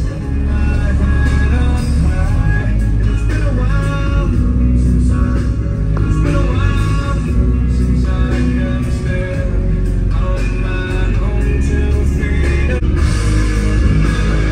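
Rock music with singing and guitar played loud through a truck's stereo, its deep bass notes from two Sundown E-series 8-inch subwoofers in an under-seat box, heard inside the cab.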